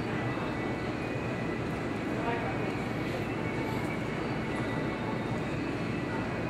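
Steady low rumble of indoor-arena background noise with faint voices murmuring under it, in a large metal-walled building.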